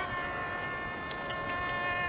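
Carnatic concert accompaniment holding one steady, buzzy note rich in overtones, the drone and violin sustaining the pitch after the vocal phrase ends.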